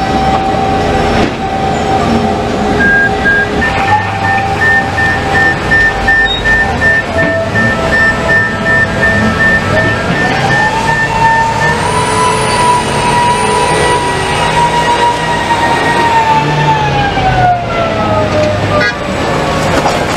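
Giant mining haul truck running under load, with a steady high whine over its rumble. About ten seconds in, the whine rises in pitch, holds, then falls away near the end. A rapid high beeping sounds through the first half.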